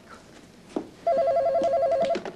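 A telephone ringing: one ring about a second long, a fast warbling trill of two alternating tones, starting about a second in. A short knock comes just before the ring.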